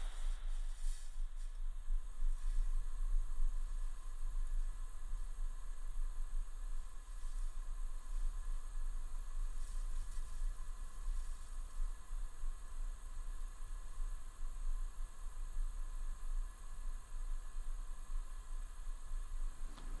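Low, fluctuating rumble with a faint steady hiss: the Falcon 9 first stage's Merlin engines firing during ascent.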